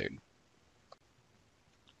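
A single computer mouse click about a second in, in otherwise near silence; a fainter tick follows near the end.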